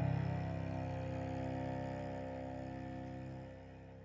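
The closing chord of a slow worship song on piano and cello, struck just before and left to ring, slowly fading away; a low held note drops out about three and a half seconds in.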